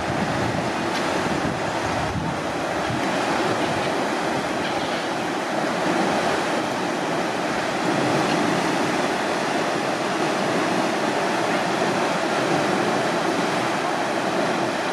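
Water released through the sluices beneath closed steel lock gates, churning and boiling up into the canal in a steady, loud rush.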